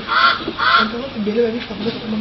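Geese honking repeatedly, about two honks a second, loudest in the first second and fading after it, with a low voice underneath.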